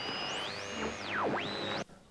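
Electronic synthesizer sweeps over a hissy bed, part of a TV news show's opening sting: a tone climbs steeply, holds high, dives down and climbs back up, then cuts off suddenly shortly before the end.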